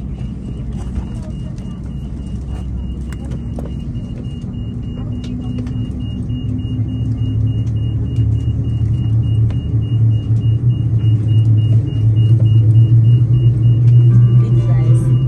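Rolls-Royce Trent 700 turbofan engine of an Airbus A330-200 starting up, heard inside the cabin. A low hum grows steadily louder and rises a little in pitch as the engine spools up.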